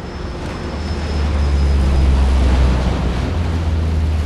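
Deep, low rumble of aircraft flying overhead, building over the first two seconds and then holding steady.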